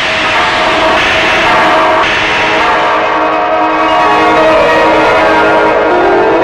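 Dramatic film background score: a loud, sustained chord of many held tones that swells as new notes enter about one and two seconds in.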